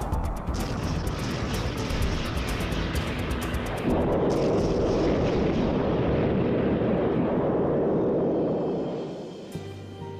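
A-10 Warthog's seven-barrel 30 mm cannon firing, followed about four seconds in by a louder, sustained rumble of rounds exploding on the ground target, which fades out near the end. Background music plays underneath.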